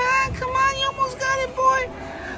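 A child's voice singing or chanting one repeated note, held and broken off five or six times with small slides at the start of each note.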